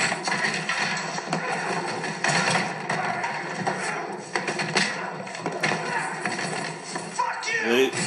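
Film soundtrack with music under it and a series of sharp knocks and clatters as painted canvases are thrown and swung around a studio. A man's voice comes in near the end.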